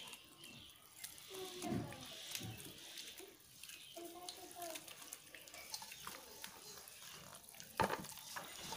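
Wet rice flour and water being squeezed and mixed by hand in a metal kadhai, with soft wet squelching and small clicks. There is a sharp knock near the end, and faint voices in the background.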